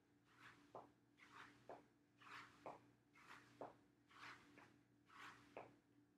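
Faint, rhythmic foot taps and shoe scuffs on a floor mat as the feet switch in incline mountain climbers, about one scuff-and-tap pair a second, over a low steady hum.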